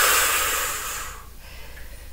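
A person breathing out hard and long under exertion: a rushing breath, loudest at the start and fading away over about a second and a half.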